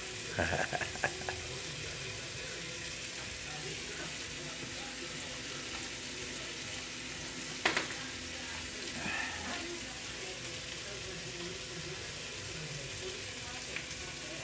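Shrimp frying in a nonstick skillet on a gas stove: a steady, even sizzle. A single sharp click comes a little past halfway.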